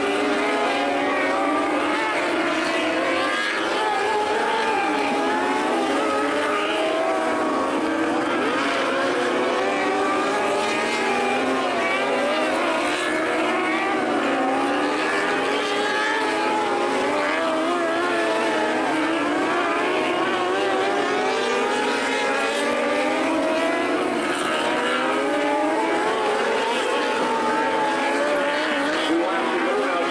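A field of 600cc micro sprint cars racing on a dirt oval, their high-revving motorcycle engines running together at a steady level, many overlapping pitches rising and falling as the cars go through the turns and down the straights.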